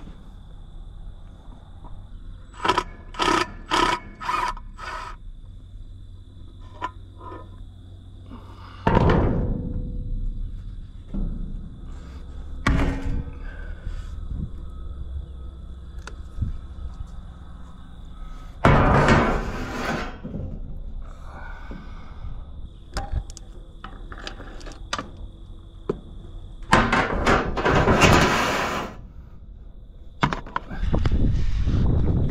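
Cordless drill whirring in a quick run of short bursts as it backs out the bolts on a grain auger's head gearbox cover, followed by loud metal clanks and scrapes as the cover is worked loose and lifted off. The auger has stopped carrying beans, and the gearbox is being opened to find what broke inside.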